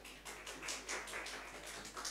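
Faint, thin applause: a few hands clapping quickly, about six or seven claps a second.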